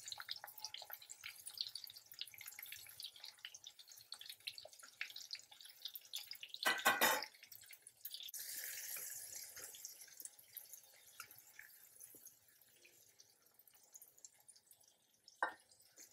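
Small stuffed eggplants frying in hot oil in an aluminium kadai: a steady light crackle of sizzling, popping oil. A brief louder clatter comes about seven seconds in, followed by a few seconds of stronger hissing, and the crackle is fainter near the end.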